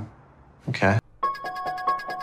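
A man's brief spoken reply, then, just over a second in, a chiming transition jingle starts: a rapid run of bell-like notes, about six or seven strikes a second, over steady held tones.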